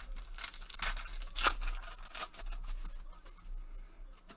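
Foil wrapper of a 2020 Select football card pack being torn open and crinkled by gloved hands, in a quick series of rips, the loudest about a second and a half in, then softer rustling.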